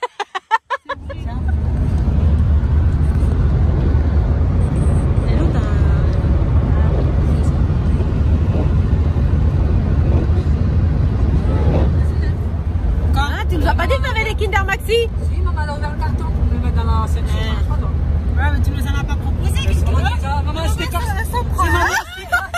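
Steady low rumble of a car, heard from inside the cabin, starting suddenly about a second in. Voices and laughter join it in the second half.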